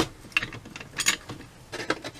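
Light metal clicks and taps from a Holley 1904 one-barrel carburetor's parts being fitted back together by hand: a handful of separate clicks, the first the loudest.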